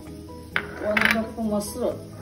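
A woman's voice speaking over background music, with a single short clink of kitchenware about half a second in.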